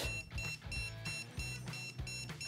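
Wiha single-pole non-contact voltage detector beeping in rapid, even pulses as it picks up the alternating electric field around a live cable. Background music plays underneath.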